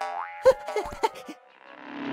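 Cartoon sound effects: a springy boing rising in pitch, then two sharp hits about half a second apart.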